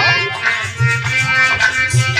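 Traditional Indian stage-play music: a harmonium holding sustained notes over a hand drum beating a steady rhythm.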